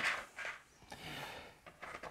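Faint handling of two stacked plastic building-brick baseplates: soft rubbing and small ticks as the plates shift against each other in the hands.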